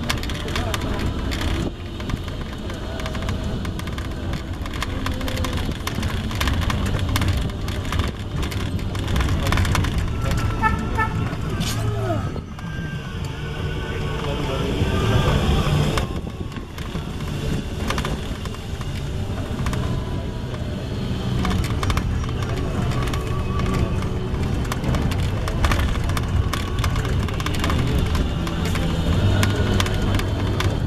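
Riding in an open-sided buggy: a steady low rumble and noise from the moving vehicle and the air around it, broken by frequent small knocks and jolts.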